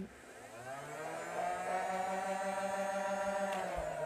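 Nerf Rapidstrike CS-18 flywheel motors spinning up: a whine that rises in pitch over the first second and a half, then holds a steady whir.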